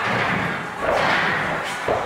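A single thud just before the end as a body lands on a padded gym floor, over the general noise of a busy gym.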